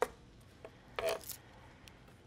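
A chef's knife on a cutting board while green onions are diced: one sharp chop at the start, then a short scrape-and-rustle about a second in.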